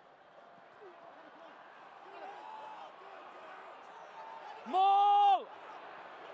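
Faint crowd and on-field voices at a rugby match, then one loud held shout from a single voice, steady in pitch, lasting under a second near the end.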